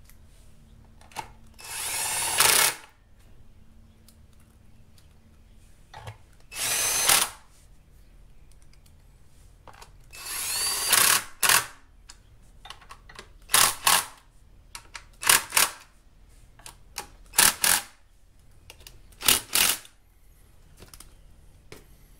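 Hercules 20V cordless drill-driver run in about eight separate bursts, backing out screws. The first three bursts last about a second each and rise as the motor spins up; the later ones are short blips.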